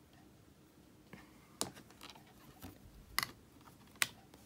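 Faint clicks and taps of rubber-stamping tools on a craft table, a clear stamp and acrylic block being inked and pressed onto card, with three sharper clicks about a second and a half apart.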